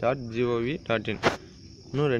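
A man's voice speaking, narrating in Tamil and English, with a faint steady high-pitched sound behind it.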